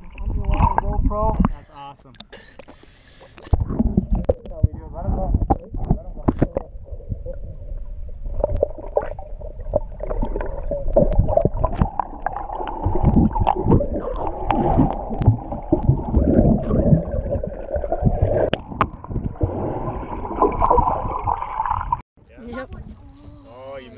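Muffled underwater sound picked up by a submerged camera: water gurgling and sloshing around it, with voices from above the surface coming through muffled and unclear. There is a loud spell in the first second and a half, and the sound grows busier from about four seconds in.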